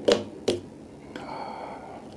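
Finger snaps, two sharp ones in the first half second, keeping an even pace of about two a second, followed by a softer, steady rubbing sound for about a second.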